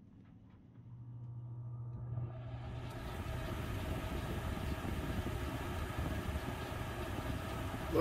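The boat's air conditioner blowing: a steady low hum comes in about a second in, and a steady rush of moving air builds over the next two seconds and then holds.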